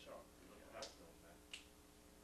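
Two faint, sharp hand slaps about two-thirds of a second apart, from two men patting each other's backs as they hug, over a steady low hum.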